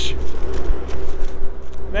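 Caterpillar track excavator's diesel engine running steadily, a low rumble with a constant hum.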